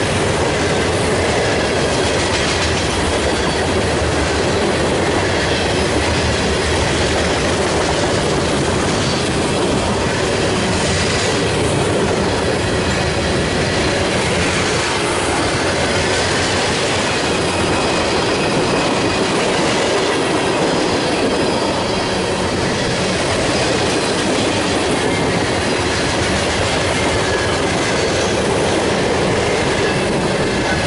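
Freight train cars rolling past at close range, covered hoppers and then tank cars, giving a steady sound of steel wheels running on the rails with a faint high squeal.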